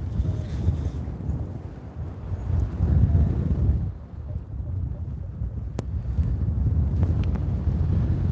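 Airflow buffeting the microphone of a camera on a paraglider in flight: a low rumbling wind noise that swells about three seconds in, drops briefly a second later and builds again, with a couple of small clicks near the end.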